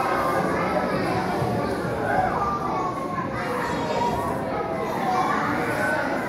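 Children and adults in an audience chattering and calling out at once, many voices overlapping in a large hall.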